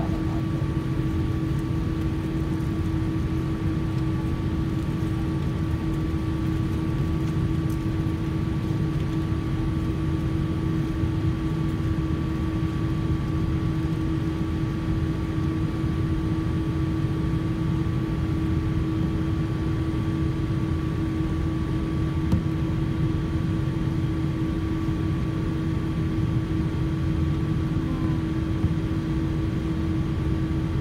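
Cabin noise of a Boeing 787-8 airliner taxiing, heard from a seat over the wing: a steady low rumble from the engines at idle with two steady hums, one low and one higher.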